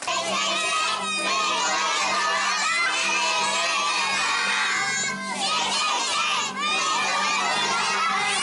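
A group of young children shouting and cheering together, many high voices overlapping.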